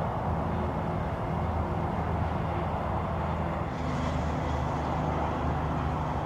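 Steady background rumble with a low motor hum, of the kind that distant vehicle traffic makes. A faint high hiss joins about two-thirds of the way through.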